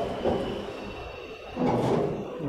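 Street background noise with a rumbling swell near the end, from scooters being unloaded off a delivery truck's rack and traffic around it.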